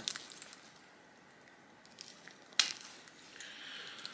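An antler-tine pressure flaker snapping a flake off the edge of a stone flake: one sharp crack about two and a half seconds in, with a fainter click a little before it.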